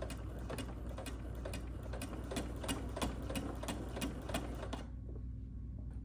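Domestic electric sewing machine running a straight stitch through thick plush blanket fabric, with a steady rapid clicking of about four to five stitches a second. It stops about five seconds in.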